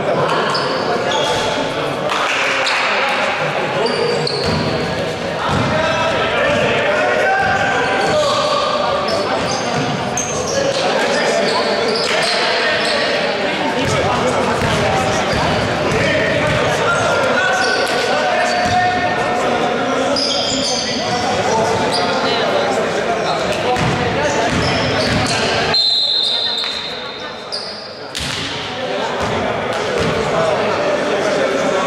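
Basketball bouncing on a wooden gym floor amid players' shouts and talk, echoing in a large hall.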